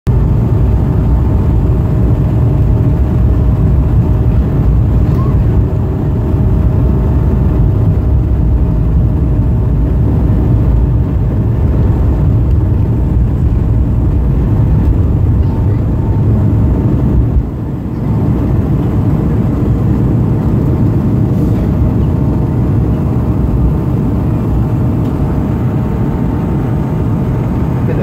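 Airliner takeoff heard from inside the cabin beside the wing: turbofan engines at takeoff thrust, a steady whine of fan tones over a heavy low rumble. The rumble dips briefly a little past halfway.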